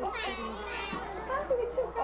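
Several people talking over one another, with a brief high-pitched cry in the first second.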